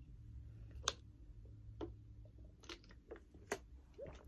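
Quiet room with a low steady hum, broken by about five sharp, scattered clicks and taps, the loudest a little under a second in.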